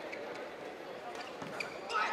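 A badminton doubles rally: sharp racket hits on the shuttlecock and shoe squeaks on the court floor, over a steady hall murmur. The loudest hit comes just before the end.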